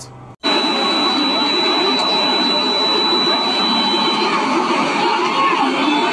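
Loud, continuous din of a crowd with many overlapping voices, starting abruptly about half a second in. A steady high tone runs over it and stops about four seconds in.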